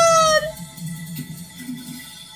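A high, squeaky sung voice from the trailer soundtrack ends a long held note that drops in pitch and stops about half a second in. Quieter background sound follows.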